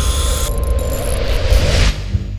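Power tools whirring and rattling during a pit-garage repair, a dense, steady mechanical noise that drops away near the end.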